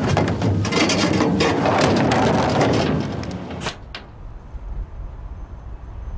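Plastic dumpster lid dragged down and banging shut, two sharp knocks a little past halfway in. After them only a low, muffled rumble is left.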